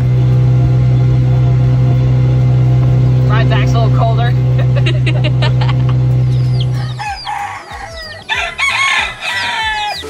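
A boat engine drones loudly and steadily, then cuts off about seven seconds in. Chickens take over, clucking and crowing, with a rooster among them.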